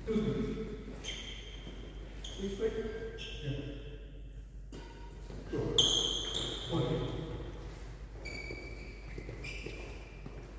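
Reverberant sports-hall sound during indoor badminton: several short, high squeaks of shoes on the wooden court floor, the loudest about six seconds in, with a few knocks and voices in the background.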